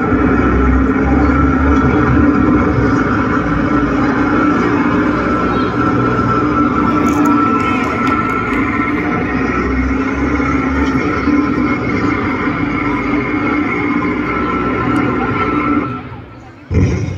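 Loud recorded backing track played over a loudspeaker, a steady droning sound with held tones over a low rumble, cutting off suddenly near the end.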